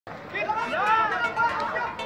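Several people's voices talking and calling out over one another, with one raised voice loudest about a second in.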